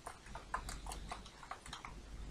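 Computer keyboard keys clicking as code is typed, about ten keystrokes in an irregular rhythm.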